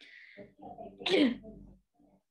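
A person sneezing once: a quick intake of breath, then the sneeze bursting out about a second in.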